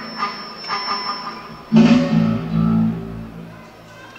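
Post-punk rock band playing live in a rough amateur recording from the audience. Electric guitar plays over a thin steady high tone with little bass. About two seconds in, the full band comes in with a loud hit and heavy bass, then dies away toward the end.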